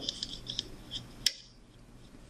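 Rubber loom bands being stretched and slipped onto the clear plastic pegs of a Rainbow Loom: a few small clicks and snaps of band and fingernail on plastic, with a sharper click about a second and a quarter in.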